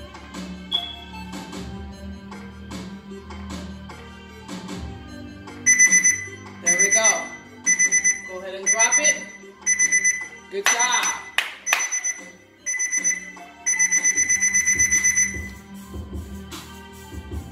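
Interval workout timer alarm beeping in short high-pitched bursts about once a second, ending in a longer run of rapid beeps, signalling the end of a 40-second work interval. A hip hop instrumental beat plays underneath.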